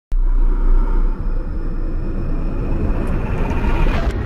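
Cinematic logo-intro sound effect: a deep rumble with a rising hiss that swells and brightens, building to a hit at the very end.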